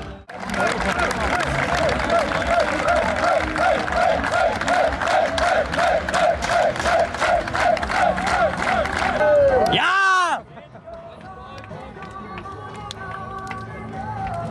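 Football fans clapping in a steady rhythm, about three claps a second, with a shout on each clap. It ends in one loud drawn-out cheer about ten seconds in, and then gives way to quieter crowd noise.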